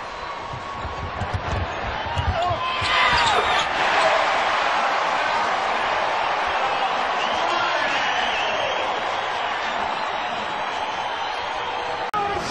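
Arena crowd noise that swells into cheering about three seconds in, with a basketball bouncing on the hardwood court during the first three seconds.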